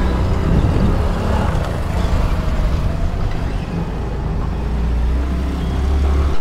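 A scooter on the move, heard from the rider's camera: steady, heavy wind rumble on the microphone over the running of the scooter's small engine and its tyres on brick paving.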